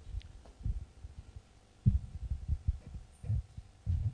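Handling noise on a handheld microphone: a series of irregular soft low thumps and bumps.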